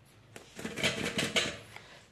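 A plastic bowl scraping and knocking against a steel bowl of flour: a quick run of scrapes and taps starting about half a second in and dying away near the end.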